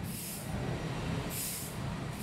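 Steady ambient location noise: a low rumble with soft hissing swells that come back about once a second.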